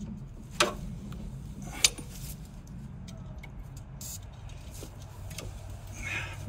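Two sharp metallic clicks about a second and a quarter apart, then faint small handling noises, from tools and parts being handled in an engine bay. A low steady rumble runs underneath.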